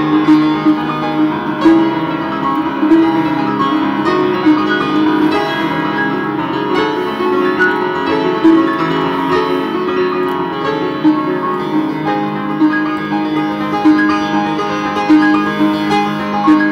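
Upright piano played in an unbroken stream of rapid, overlapping notes that blur into a sustained wash of tone, carrying a Ukrainian church hymn.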